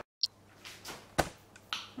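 A brief drop to dead silence at an edit, then a quiet room with one sharp click a little over a second in and a few fainter clicks around it.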